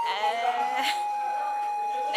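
A young woman laughing in a quavering, bleat-like way, over background music holding one long steady note.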